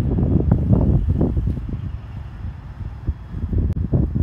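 Wind buffeting the microphone in gusts: a low rumble for about the first second and a half, easing, then rising again near the end.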